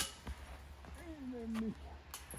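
A sharp knock at the very start, then a man's single drawn-out vocal sound, falling in pitch, about a second in.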